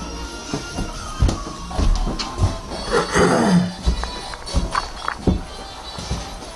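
Music and sound effects from a video game playing in a room, mixed with irregular knocks and thumps.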